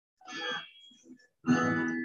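Guitar music, cutting out briefly and coming back louder about one and a half seconds in, heard through a Zoom call's audio.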